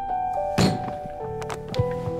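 A fist banged down on a desk: one heavy thud about half a second in, then a lighter knock near the end, over background music of sustained notes.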